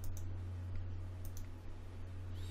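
Computer mouse clicks: two quick double ticks about a second apart, over a steady low hum.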